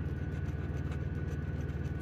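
Steady low hum of an idling engine, even and unchanging.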